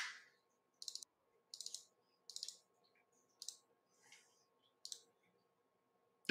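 Near silence while a video call's audio has dropped out, broken by a few faint, short clicks at a computer. Some clicks come singly and some in quick clusters of two or three.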